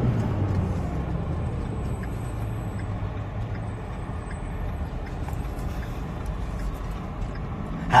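Steady low rumble of a vehicle's engine and road noise heard from inside the cabin while driving.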